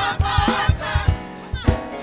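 Gospel praise team singing together into microphones over instrumental backing with a steady low beat.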